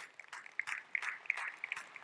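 Light, scattered applause: a few hands clapping at an irregular pace.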